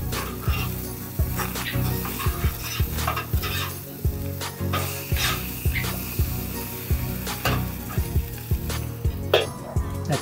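Meat sizzling on a gas grill, with repeated clicks and scrapes of a metal spatula against the grill grate, over background music.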